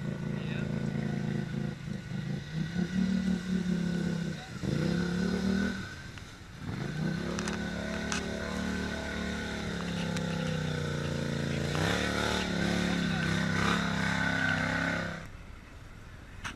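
ATV engine revving hard as the quad is driven while bogged in deep mud, the revs surging, dropping off about six seconds in, then climbing back up and holding high before cutting off near the end.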